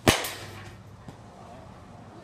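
Baseball bat hitting a ball: one sharp crack about a tenth of a second in, with a brief ringing decay, then a faint knock about a second later.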